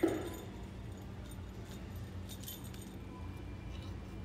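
A bump right at the start, then light scattered clinks and rattles of hanging Christmas ornaments and their hangers against metal display peg hooks as they are handled, over a steady store hum.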